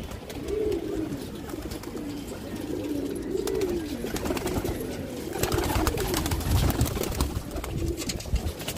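Domestic pigeons cooing repeatedly in their loft. Scattered clicks run throughout, and a low rumble comes in the second half.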